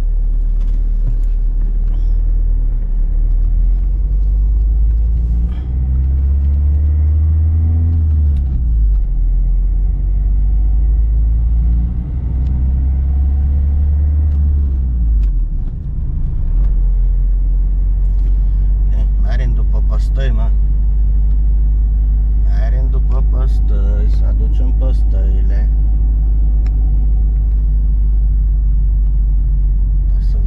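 Car engine and road rumble heard from inside the cabin as the car pulls away. The engine note rises twice as it accelerates, dropping back after each rise, then settles into a steady rumble while cruising.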